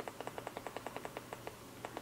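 A fast run of small, even clicks, about a dozen a second, from scrolling through a TV's YouTube menu. It stops after about a second and a half, and a few more clicks come near the end.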